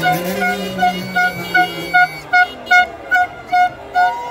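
A vehicle horn honked in quick, regular short beeps, about three a second, in celebration, with a lower steady tone underneath for the first two seconds or so.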